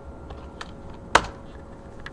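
Computer keyboard being typed on: a few light keystrokes as a password is entered, then one sharp, much louder key press a little past halfway, the Enter key that runs the command.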